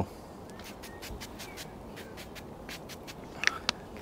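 Faint scattered clicks from a small pump-spray bottle of cooking oil being handled, with two short sharp sounds near the end.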